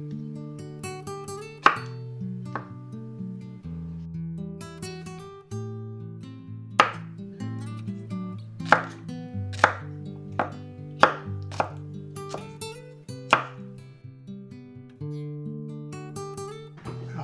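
Kitchen knife chopping garlic cloves on a wooden cutting board: about ten sharp single knocks at an uneven pace, most of them in the second half. Acoustic guitar background music plays under the chops.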